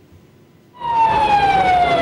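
Emergency vehicle siren wailing over street noise. It comes in suddenly just under a second in and glides slowly down in pitch.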